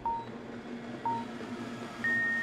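Two short beeps a second apart from the boat race start countdown signal, over the drone of the racing boats' engines.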